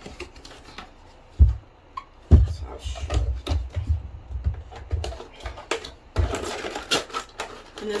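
A cardboard product box being handled and its flap worked open and shut: two sharp knocks about a second and a half and two and a half seconds in, then uneven clicks and thuds, with denser scraping and rattling of the cardboard near the end.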